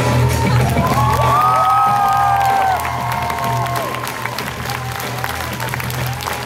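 Music with a steady low bass plays over an audience cheering and clapping. About three seconds in, the music drops a little and the applause carries on.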